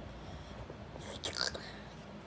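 A short whisper about a second in, over low, steady room noise.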